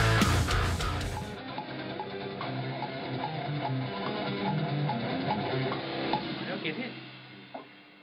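A heavy metal recording with drums and distorted guitars cuts off about a second in. Then an Ibanez electric guitar is played alone in the room, quick picked single notes and riffs, quieter and thinner, fading out near the end.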